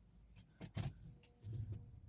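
Ignition key turned to the on position in a 2005 BMW 325i, engine off: faint clicks about three-quarters of a second in, then a faint steady hum as the car's electrics power up, with a soft low sound near the end.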